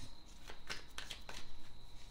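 A tarot deck being shuffled by hand: a string of short, irregular card flicks and clicks.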